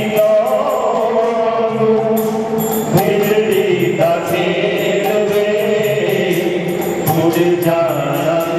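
Male voice leading a devotional chant through a microphone, with a steady beat of small hand cymbals at about three strikes a second.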